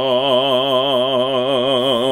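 A man's voice chanting a Hebrew prayer, holding one long sung note with a steady vibrato.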